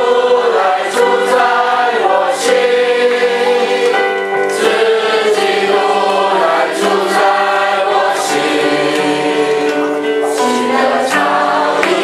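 A congregation singing a hymn together, many voices holding long notes that move from one pitch to the next every second or so.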